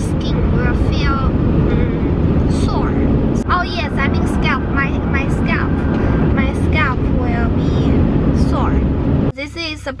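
Road and engine noise inside a moving car's cabin: a loud, steady low rumble that cuts off suddenly about nine seconds in.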